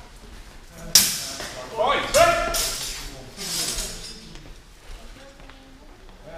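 A sharp, loud sword strike about a second in during a HEMA fencing exchange, ringing briefly, followed by loud shouts.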